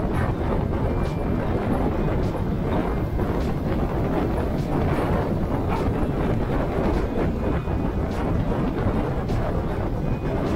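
Steady wind rumble on the microphone over motorcycle riding noise, engine and tyres on asphalt, while moving through city traffic.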